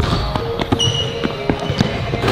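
A basketball being dribbled on a hardwood gym floor: several separate bounces, unevenly spaced. A short high squeak comes about a second in.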